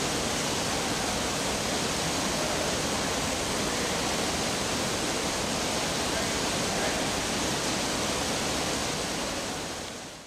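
Steady downpour of artificial indoor rain, a dense field of water falling from the ceiling nozzles of the Rain Room installation onto a grated floor, fading out near the end.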